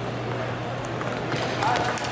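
Table tennis ball clicking off paddles and the table in a doubles rally: a quick run of sharp clicks beginning past the middle, over background chatter.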